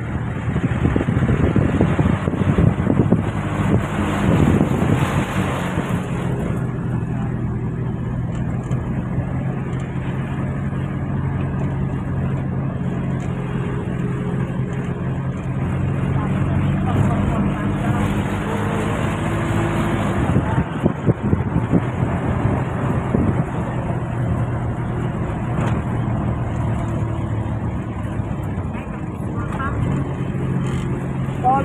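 Engine and road noise of a large vehicle, heard from inside its cab while it drives. A steady engine note holds through the middle and changes about two-thirds of the way through.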